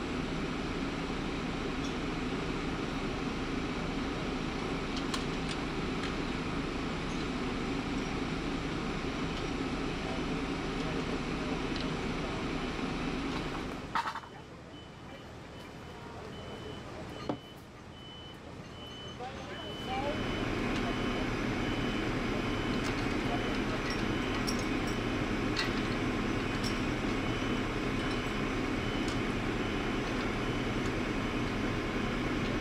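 Heavy truck diesel engine running steadily at close range, with a few light clicks as a chain is handled. The engine drone drops away for several seconds about halfway through, then returns.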